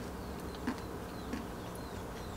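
A low steady hum, with a few faint soft mouth clicks as a spoonful of food is chewed.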